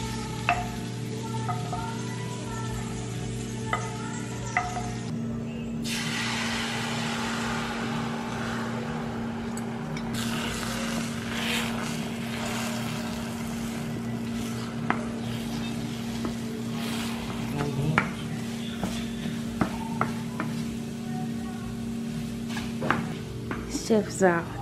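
Beaten eggs sizzling in butter in a nonstick frying pan while a wooden spatula stirs and scrapes them, with scattered sharp taps against the pan. The sizzle grows louder about five seconds in.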